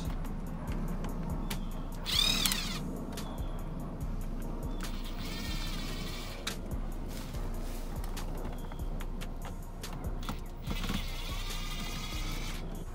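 Cordless electric screwdriver backing out Phillips screws from a car's dashboard cup holder, its motor whining in three short runs: about two seconds in, again around five to six seconds, and near the end. Background music plays throughout.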